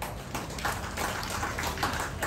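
Scattered clapping from a rally audience: irregular claps over a murmur of crowd noise.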